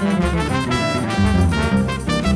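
Nylon-string classical guitar playing a chorinho melody and bass runs over a gafieira-style band backing track, with horns holding sustained notes.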